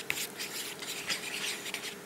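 Cutlery stirring thick meat stew and mashed potato in a plastic ready-meal tray: soft, irregular scraping strokes with small clicks against the tray.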